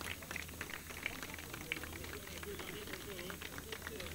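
Faint, scattered hand-clapping from a small crowd, irregular rather than in rhythm, with indistinct voices murmuring underneath.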